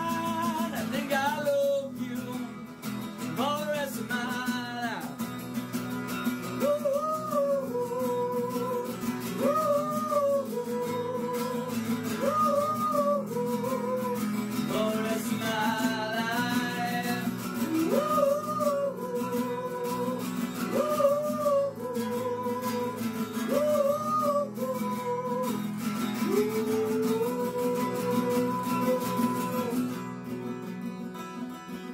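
Male singer with a guitar accompaniment, a live solo performance. The voice holds long notes in repeating phrases, sliding up into several of them, over steadily strummed guitar chords.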